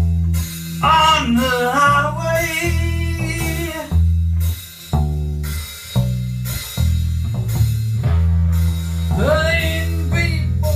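Blues band playing: electric guitar over a steady electric bass line and a drum kit. A voice sings a bending melody line in two phrases, one near the start and one near the end.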